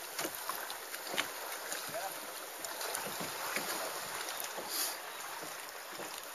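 Sea water lapping and splashing against a kayak's hull, with light drips and splashes from paddling scattered throughout.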